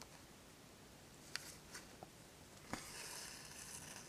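Very faint hand stitching: a few soft ticks and a light rustle as a needle and thread are worked through layered cloth and a pinned paper template.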